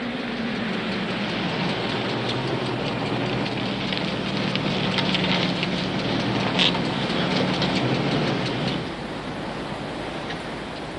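A car engine running: a low steady hum that drops slightly in pitch as it begins and eases off about nine seconds in, under an even hiss.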